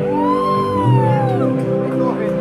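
Live band holding a sustained chord, with a high note over it that bends up and then slowly slides down over about a second and a half.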